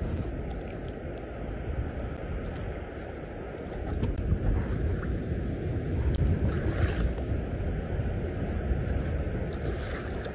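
Wind blowing over the microphone with the wash of shallow sea water at the shore behind it, a steady noisy rush that grows a little louder about four seconds in.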